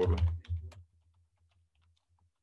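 Computer keyboard typing: a short run of key clicks just after the start, then a few faint taps.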